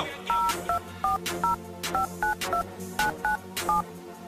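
Touch-tone cordless phone being dialled: about ten short two-pitch keypad beeps in an uneven rhythm, each with a faint key click.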